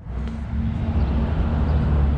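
Steady low rumble of a motor vehicle engine running nearby in street traffic, after a sharp click at the very start.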